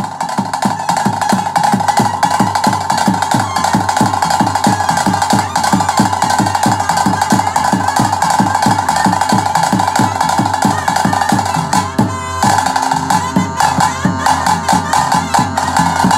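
Traditional Tulu ritual music: thase drums beaten in a quick, even rhythm under a steady, held flute line. About twelve seconds in, the drumming briefly packs into a rapid roll and then changes pattern.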